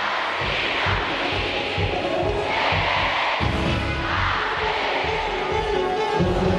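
A live band playing Colombian música popular with guitars and drums, over a large outdoor crowd cheering in swells that rise three times.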